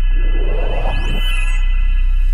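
Electronic intro sting: a deep steady bass drone under sustained high tones, with a swelling whoosh and a steeply rising sweep about half a second in that fades out before a second and a half.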